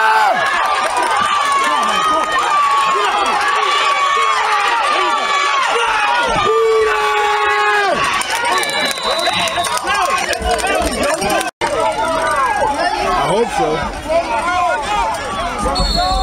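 Sideline spectators at a youth football game yelling and cheering over one another. There are long held shouts in the first half, then many voices calling at once.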